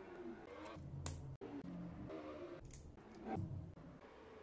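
Faint handling noises as a wire lead and its terminal are worked into a power supply's screw terminal block: a few short clicks and light rustling, the clearest about a second in and again shortly after three seconds.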